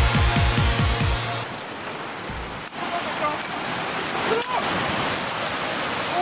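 Electronic dance music with a fast, dropping bass beat cuts off suddenly about a second and a half in, leaving the steady rush of fast-flowing river water, broken by a couple of sharp clicks.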